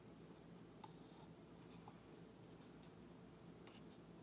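Near silence: room tone with a few faint, scattered clicks and small rustles from plastic paint cups and a paint bottle being handled.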